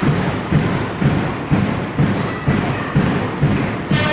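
Steady drumbeat of low thumps, evenly spaced at about two beats a second.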